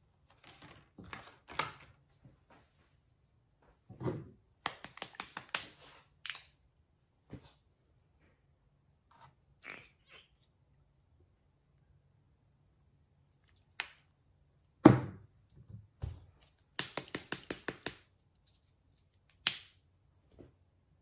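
Scattered clicks and taps of a small plastic paint bottle being handled and squeezed as paint is laid onto a canvas. There are two quick runs of clicks and one heavier thump about fifteen seconds in.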